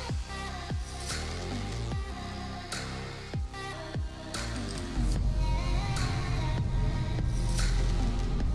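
Background music with a steady beat and sliding bass notes; the bass gets heavier and louder about five seconds in.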